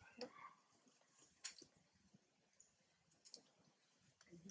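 Near silence with a few faint, sharp clicks: three, spread across the few seconds.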